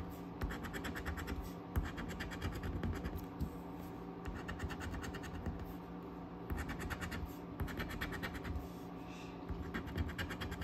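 A coin scraping the latex coating off a scratch-off lottery ticket in rapid back-and-forth strokes. The strokes come in bursts, with a quieter lull about halfway through.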